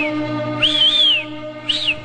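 A bus conductor's shrill whistling: high notes that rise and fall, a long double-humped note about half a second in, then a short sharp one near the end, over background music with a steady drone.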